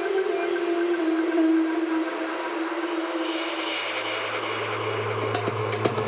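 Electronic dance music at a breakdown: a held tone over a hiss, with a deep bass note coming in about halfway and clicking percussion starting near the end.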